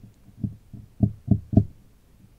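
A woman's breaths close to the microphone: four short, low puffs, unevenly spaced a third to half a second apart.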